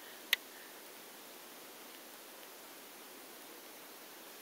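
Faint steady hiss with one sharp click about a third of a second in.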